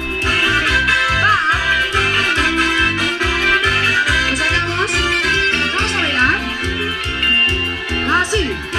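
Live dance band playing upbeat music: a steady bass beat at about two pulses a second under electronic keyboard chords and a wavering melody line.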